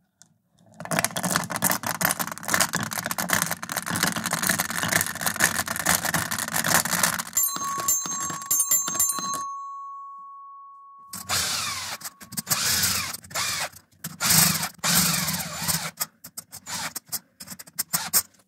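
Steel marbles rolling and clattering through a wooden track into a 3D-printed plastic marble divider and dropping into its channels, with dense rapid clicking for the first several seconds. About seven seconds in, a clear ringing tone sounds and dies away over about four seconds. Then more rolling and clattering, with some ringing tones, comes in separate bursts.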